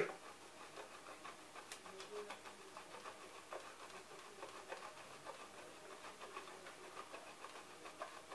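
Hard cheese being grated on a metal box grater: faint, repeated rasping strokes.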